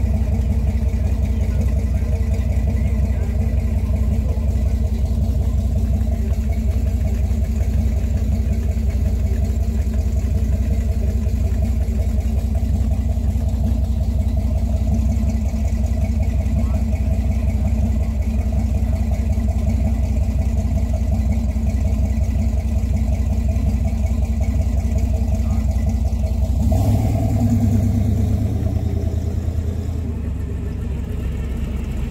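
A car engine idling steadily with an even, low pulsing note. About 27 seconds in, its note changes briefly.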